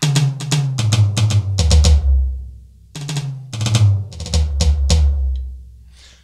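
Sampled toms of a KAT KT-200 electronic drum kit on its Funk preset, bright-sounding, played in two quick fills. Each fill steps down in pitch from the higher toms to the floor tom, with a short pause between the two.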